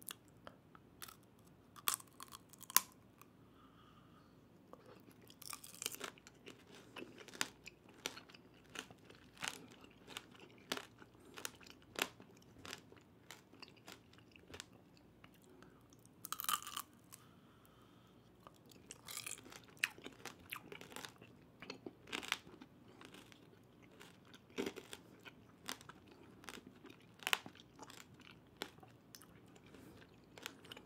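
Close-miked eating of tanghulu: the hard candied-sugar shell on skewered fruit cracking between the teeth, followed by wet chewing, heard as many irregular sharp crunches with a few louder bites.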